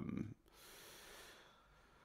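The tail of a spoken "um", then a soft breath drawn in for about a second, with no pitch to it, before the talker speaks again.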